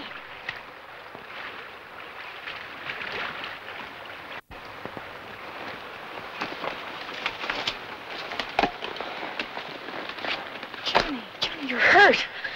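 A horse splashing through a shallow river, a steady wash of spray broken by many short splashes of its hooves. Near the end comes a short pitched cry that bends down and up.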